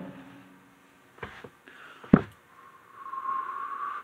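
A person blowing across a bowl of hot microwaved energy drink to cool it: a soft breathy blow that builds in the second half and steadies near the end. A single sharp knock comes about two seconds in.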